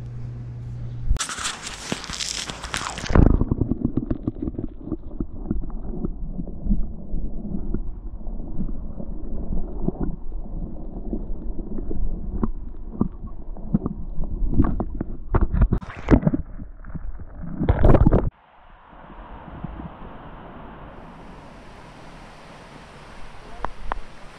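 Muffled knocks, bumps and rumbling from a camera in a waterproof housing being moved about underwater, after a burst of rushing water about a second in. About eighteen seconds in it cuts off abruptly to a quieter steady outdoor hiss.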